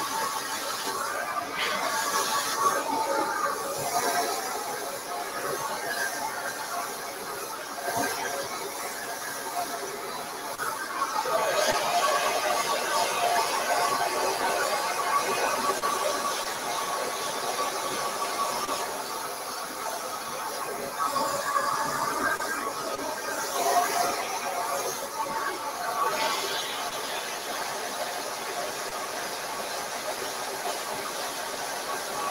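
Handheld hair dryer running on high heat and high airflow, blowing through a round brush on the hair; its whine and rush of air swell and fade as it is moved along the strands.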